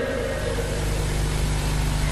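Steady low hum with a bed of hiss, the kind of background a public-address system gives off between a speaker's words.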